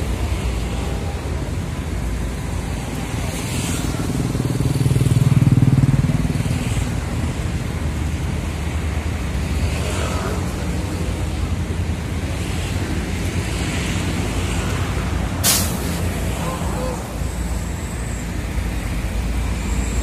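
Big diesel coaches idling close by: a steady low rumble that swells for a couple of seconds about five seconds in, with one short, sharp hiss of released air, typical of a bus's air brakes, about fifteen seconds in.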